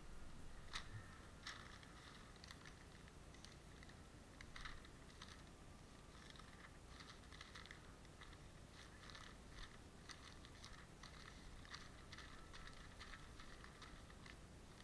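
Faint, irregular crinkling and rustling of newspaper as gloved hands rub and pull fat and membrane off a muskrat hide while fleshing it.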